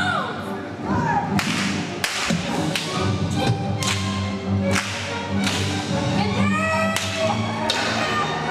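Staged stunt-show fight: about seven sharp cracks and thuds, irregularly spaced, over a steady backing music score.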